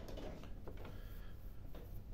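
Faint clicks and light rattling of a mains plug and cable being handled, over a faint low steady hum.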